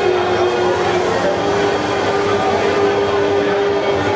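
A loud sustained drone of held tones that steps to a new pitch about a second and a half in, over the steady noise of a crowded club.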